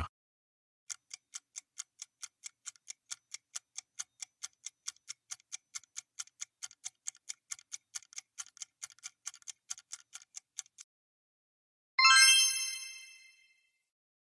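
Quiz countdown timer sound effect: quick, even ticking at about four ticks a second for some ten seconds, then a bright chime about twelve seconds in that rings and fades, marking time up and the reveal of the correct answer.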